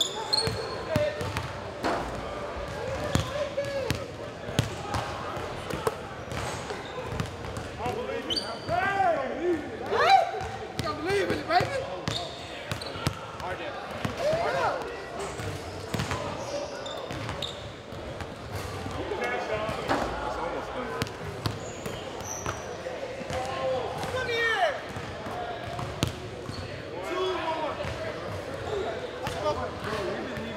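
A basketball being dribbled and bouncing on a hardwood gym floor, a scatter of sharp knocks, with short high squeaks of sneakers on the hardwood coming in clusters.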